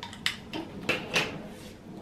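Four or five short plastic clicks and knocks from a plastic slime container and its plastic spoon being handled while green slime is worked out onto a table.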